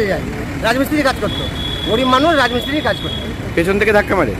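Men's voices talking in short bursts over steady roadway traffic noise. A thin, steady high-pitched tone sounds for about two seconds in the middle.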